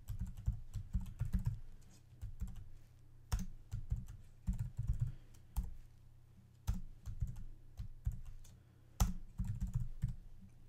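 Typing on a computer keyboard: irregular bursts of keystrokes with short pauses, a few keys struck harder than the rest.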